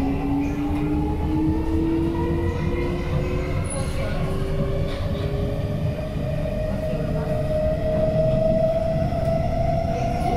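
C151C MRT train's traction motors whining, the tone rising steadily in pitch as the train gathers speed, over the low rumble of the car running on the track.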